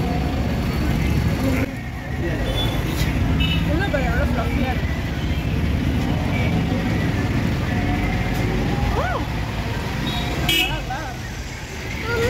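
Street traffic: a steady low rumble of motor vehicles on the road, with a few short horn toots and scattered voices in the background.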